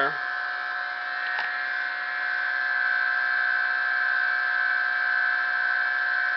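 Bedini-style pulse motor running: a steady high-pitched electrical whine from the pulsed coil and spinning magnet rotor.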